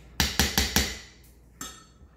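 A mixing utensil knocking against a stainless steel mixing bowl while batter is stirred: four quick knocks in the first second, then one weaker knock a little later.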